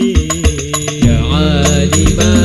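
Al-Banjari sholawat: a solo male voice sings an ornamented Arabic devotional line over struck frame-drum beats. About a second in, other male voices join him and the sound grows fuller and louder.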